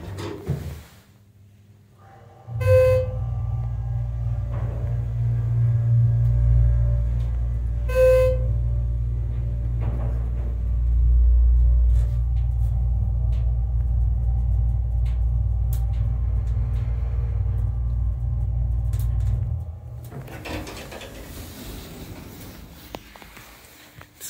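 Schindler 330A hydraulic elevator travelling up, its pump running with a steady low hum that starts about two and a half seconds in and stops a few seconds before the end. Two short electronic beeps sound over the hum, one as it starts and one about five seconds later.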